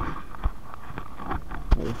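Handling noise on the camera's microphone as it is moved about close up: a low rumble with a few knocks, the loudest about three-quarters of the way through.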